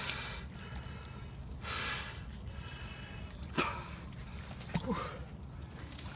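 A winter swimmer breathing hard and gasping in icy water, with a loud breath about two seconds in. A single sharp knock or splash cuts in about halfway.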